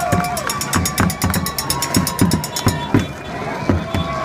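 Protest drumming in a marching street crowd: low drum beats about three a second over long held tones, with a fast high rattle that stops about three seconds in.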